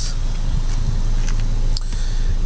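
A vehicle engine idling with a steady low hum, with a few faint clicks of the phone being handled.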